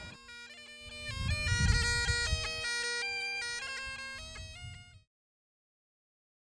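Great Highland bagpipes playing a tune: steady drones under the chanter's melody stepping from note to note. The sound cuts off abruptly about five seconds in.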